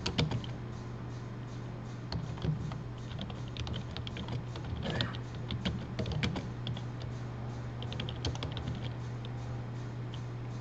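Typing on a computer keyboard: short, irregular runs of keystroke clicks with brief pauses between them, over a steady low electrical hum.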